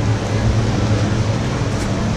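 Steady outdoor rushing noise with a constant low rumble.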